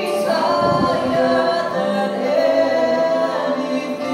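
Two men singing a slow worship duet into handheld microphones, holding long sung notes that shift in pitch.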